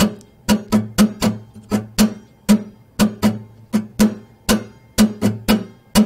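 Acoustic guitar chords strummed at about four strums a second, with a strum left out here and there. This breaks up a steady down-down-up pattern by varying the spacing of the strums.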